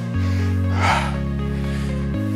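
Workout background music with sustained low synth chords that change about every second. A short, sharp exhale of breath comes about a second in.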